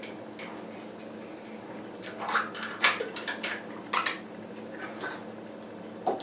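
A glass jar with a screw lid and other small kitchen things handled on a table: a run of sharp clinks and knocks starting about two seconds in, the loudest two near the middle.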